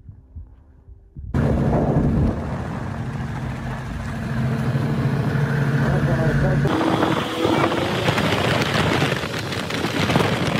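After a quiet first second, a snowmobile's engine runs steadily at speed, with wind rushing over the microphone. About two-thirds of the way through, the engine's tone fades and mostly wind rush remains.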